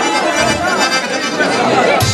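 Guests chattering and talking over live band music starting up, with accordion and a low, regular bass beat coming in about half a second in.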